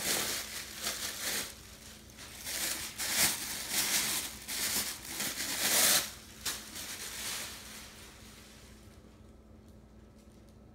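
Clear plastic bag crinkling in bursts as it is pulled off a stainless saucepan, dying away about eight seconds in.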